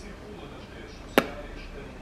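A single sharp click a little over a second in, over faint room tone.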